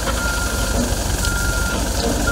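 A heavy machine's reversing alarm beeping at one pitch, about one half-second beep a second, over the steady low running of a loader's engine.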